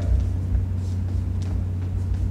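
Steady low hum or rumble, with two faint taps, one about a second in and another shortly after.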